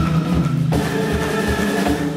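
Progressive rock band playing live: the drum kit keeps time with kick-drum beats under held, sustained chords. About three-quarters of a second in, the high cymbal wash falls away and the chord changes.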